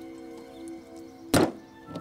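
Quiet background music with sustained tones. About a second and a half in, one solid thunk sounds.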